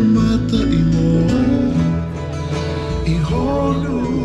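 Live Polynesian dance-show music: plucked guitar strings with a voice singing over them.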